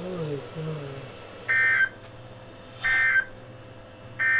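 Emergency Alert System end-of-message data signal: two short, shrill warbling bursts of digital tones, each about a third of a second long, the first about a second and a half in and the second about 1.3 s later. They mark the end of the alert broadcast. Before them, a hummed "mm" in the first second.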